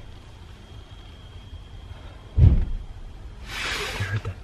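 A single loud, deep thud about two and a half seconds in, then a short hiss near the end.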